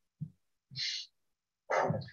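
A man's voice between phrases: a very short low vocal sound just after the start, a breathy hiss about a second in, and speech starting again near the end, with dead silence in between.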